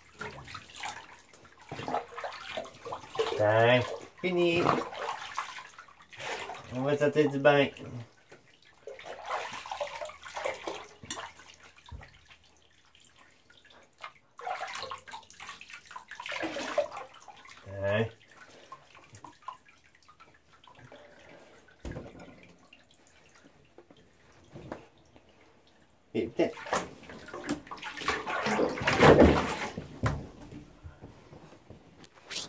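Bathwater sloshing and splashing in a bathtub as it is poured over a Great Dane puppy, in short intermittent bouts. Near the end comes a longer, louder stretch of splashing as the water is churned up.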